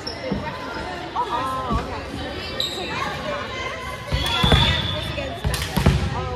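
A volleyball thudding on a gym's hardwood floor and being struck, several times, the loudest hits in the last two seconds. Players' voices chatter throughout, with a few brief high squeaks, all echoing in a large gymnasium.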